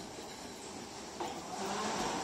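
Escalator running amid the steady noise of a large indoor concourse, with a sudden knock a little over a second in and the noise growing louder near the end.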